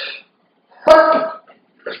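A man burps once, about a second in: a short, sudden belch that fades within half a second, and he excuses himself afterwards.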